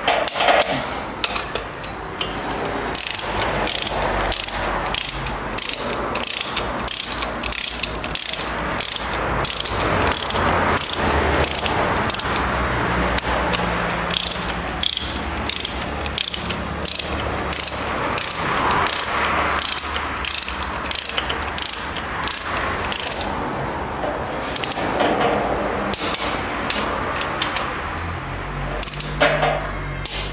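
Ratchet head of a torque wrench clicking in many quick, repeated strokes as it tightens the connecting-rod big-end nuts of a Toyota 5L engine. This is the initial torque stage, before the nuts are turned through a further 90 degrees.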